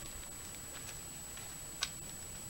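Outdoor ambience: a low rumble of wind on the microphone with a few faint, irregular clicks and one sharper click near the end.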